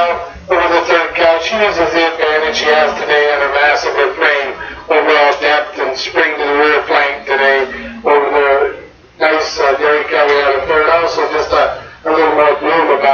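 Speech only: a man talking steadily over a loudspeaker, pausing briefly about nine seconds in.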